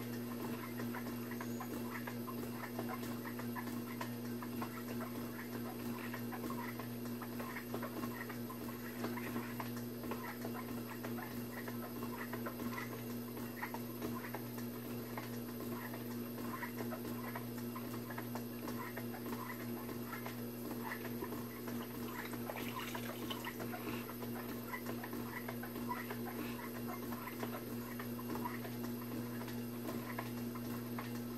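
Electric pottery wheel humming steadily while wet hands shape clay on the spinning wheel head. A light, uneven ticking runs on through it.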